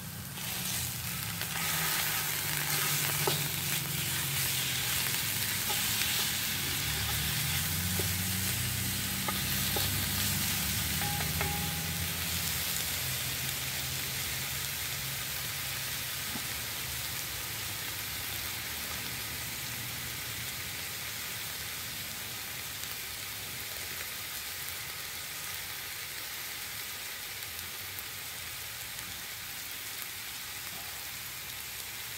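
Ground venison sizzling loudly in a hot cast iron dutch oven as it goes into the pot and is stirred with a wooden spatula, with a few faint scrapes. The sizzle jumps up about a second in and slowly eases off over the rest.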